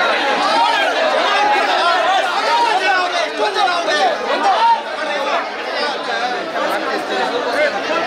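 Dense crowd chatter: many people talking and calling out over one another at once.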